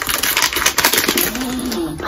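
Thin plastic packaging being handled and pulled open, crinkling and rustling in quick, dense crackles.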